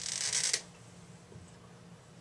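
Cap being pulled off a dry-erase marker: a short scraping noise lasting about half a second, then only faint room hum.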